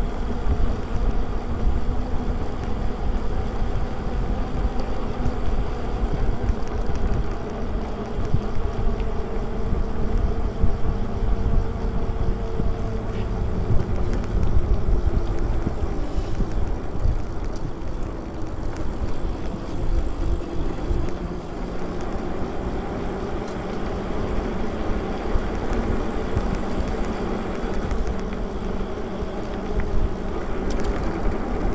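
Wind rushing over the microphone and the tyre and drive hum of a fat-tire e-bike riding on pavement: a steady low rumble that rises and falls with the gusts, with a faint humming tone that drifts lower about halfway through.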